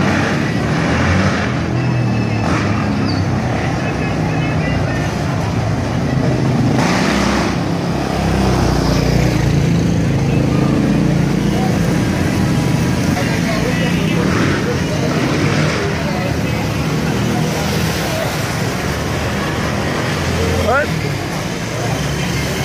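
Steady street din of motorcycles and cars passing, mixed with the chatter of many people.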